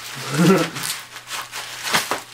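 Bubble wrap and packing tape crinkling and tearing as they are pulled apart by hand, with crackles about a second in and again near the end. A brief voice sound, louder than the crinkling, comes about half a second in.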